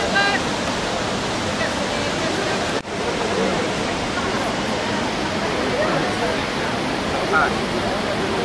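Ouzoud Falls pouring: a steady rushing noise of falling water, with faint voices of people mixed in. The sound drops out for a moment about three seconds in.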